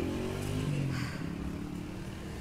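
A motor vehicle engine running in passing traffic, with its low hum shifting slightly in pitch and easing off after about a second.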